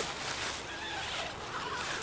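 Zipper on a Marmot EOS 1 backpacking tent's nylon door being pulled open in one steady, soft pull.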